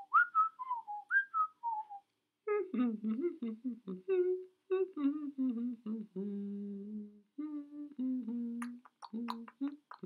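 A person whistles a short falling tune for about two seconds, then a voice hums a wordless melody in short notes.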